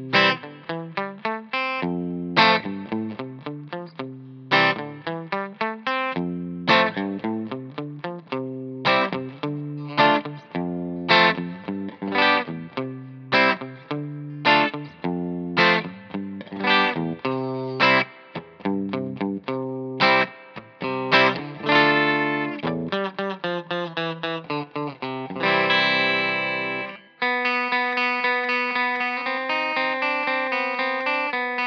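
Fender American Professional II Jazzmaster electric guitar played clean straight into a Hamstead valve amp with a little of the amp's reverb. It plays a flowing run of picked single notes and arpeggiated chords, then settles near the end into one held chord that rings out.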